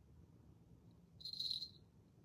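A cricket trilling in one short burst of about half a second, a little past a second in, over a faint low background hum.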